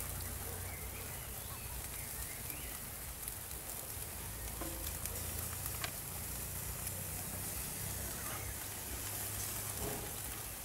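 Sausages and steaks sizzling steadily on a hot swing grill over a fire, with a couple of faint clicks about midway through.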